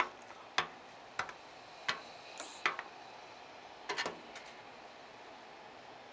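A plastic card tapping and scraping on the glass of a hand mirror as it chops powder into lines: a run of sharp, irregular clicks, about one every half second to second, with a quick pair near four seconds in, ending about four and a half seconds in.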